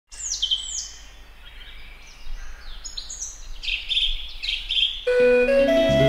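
Birds singing and chirping, with repeated calls that sweep down in pitch. About five seconds in, the instrumental introduction begins with sustained, steady notes.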